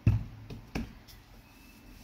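Three knocks on a kitchen work table as utensils and dough are handled before rolling out, the first the loudest, the next two about half a second and 0.8 s in.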